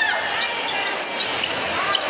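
Basketball court sound in an arena: steady crowd noise, with sneakers squeaking briefly on the hardwood floor and the ball being dribbled.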